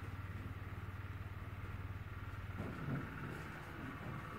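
A low, steady hum that stops about two and a half seconds in, followed by a soft knock.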